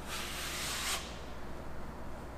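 Steel drywall taping knife scraping joint compound across a screw head on drywall, one stroke lasting about a second. This is the second coat being laid over the screws.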